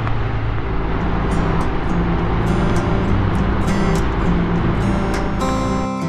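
A 1971 Triumph TR6C 650 parallel twin running at road speed with wind rush, heard from the rider's seat. Strummed acoustic guitar music fades in over it from about a second in. The riding sound cuts out near the end, leaving the music.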